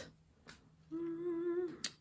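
A woman humming one short, steady note of a little under a second, followed by a brief click.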